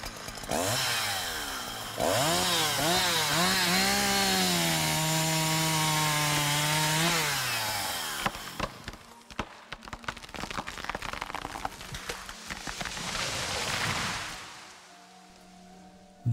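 Chainsaw revved up and down several times, then held at a steady high pitch for a few seconds before dropping off. A rougher, noisier stretch follows as it cuts into wood, then fades away near the end.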